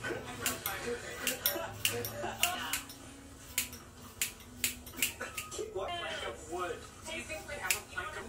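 Scissors snipping through wet hair: a run of sharp, irregular snips, a dozen or more.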